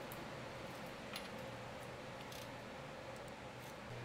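A few faint clicks about a second apart, typical of a socket ratchet tightening a car's oil pan drain plug, over a steady low hum.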